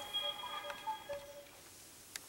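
Sprint startup chime from a Samsung Galaxy S3's speaker as the phone boots: a short run of electronic tones, a few held notes under brief higher blips, fading away about a second and a half in.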